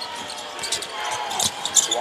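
A basketball dribbled on a hardwood court during live play, with the arena crowd's noise underneath.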